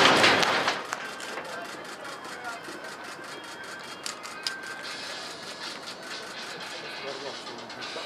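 Loud noise from a building's explosive demolition dying away in the first second, then a much quieter background with faint distant voices and a few light clicks as the dust cloud spreads.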